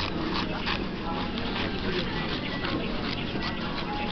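Paper rustling and crinkling as the pages of a printed booklet are handled and turned close by, over background voices.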